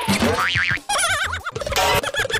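Cartoon comedy sound effects over background music: a falling glide, then a quick down-and-up sweep, then wobbly 'boing' spring tones about a second in.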